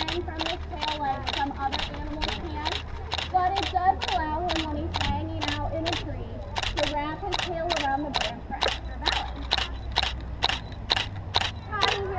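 A person talking, likely over a loudspeaker, overlaid by a steady train of sharp clicks, about four a second.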